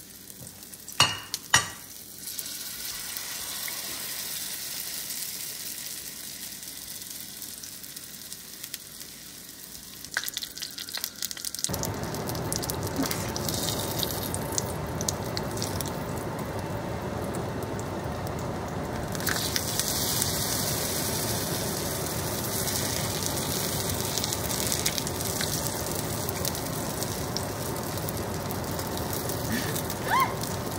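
Battered tofu slabs frying in shallow oil in a pan, a steady sizzle. There are two sharp knocks about a second in, and the sizzle is louder from about twelve seconds on.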